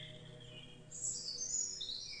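A bird singing a short run of high chirps about a second in, over the fading tail of a soft, sustained background-music note.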